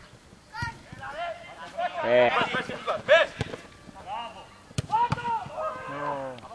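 Footballers calling out to each other in short shouts during play, with several sharp thuds of the ball being kicked, two in quick succession near the end.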